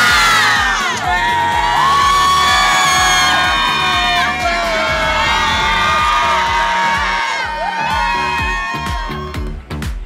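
A crowd of high school students cheering and screaming together, many voices overlapping, dying down near the end.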